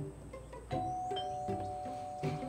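A doorbell chime rings under a second in, its two tones holding on, over light plucked-string background music.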